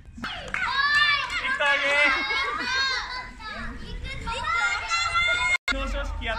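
A group of young children's voices shouting and chattering over one another, high-pitched and lively. The sound cuts out for an instant near the end.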